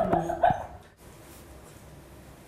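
A Shih Tzu in labour, restless and nesting, gives a brief yelp in the first half-second. After that there is only faint room tone.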